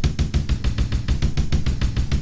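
Drum samples from the Groove Agent sampler in Cubase, triggered from an Akai MPK 261 controller, playing in a fast, even run of hits at about ten a second with a strong low end.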